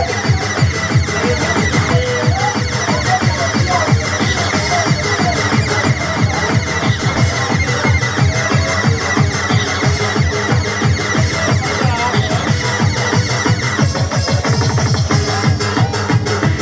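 Electronic dance music from a DJ mix, played loud over a club sound system, with a steady beat. A steady high tone runs through the track and drops out near the end.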